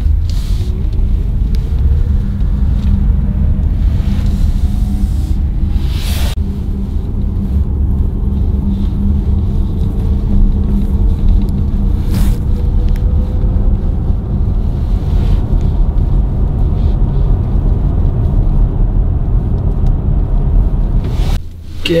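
Polestar 2 electric car driving on a winter road, heard from inside the cabin: a steady low tyre and road rumble, with a faint whine that rises slowly over the first half as the car picks up speed. Two short knocks come about 6 and 12 seconds in.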